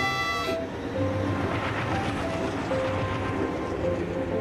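A cartoon train's sound effect as it sets off: a short horn toot, then the steady rumble and rush of the train rolling along the track, with background music underneath.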